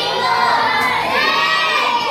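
A group of children shouting together, loud and high, their voices holding long rising and falling notes like a chant.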